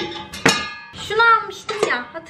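Stainless steel pot and its perforated steamer insert clanking together as they are handled: a sharp metallic clank with a short ring about half a second in, then a few lighter knocks near the end.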